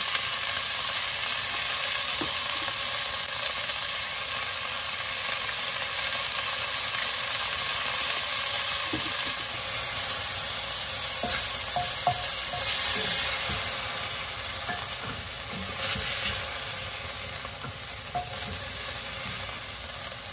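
Cubes of stewing beef sizzling as they sear in olive oil in an enamelled cast-iron pot, with a wooden spoon stirring and scraping the meat around. The sizzle fades over the last few seconds.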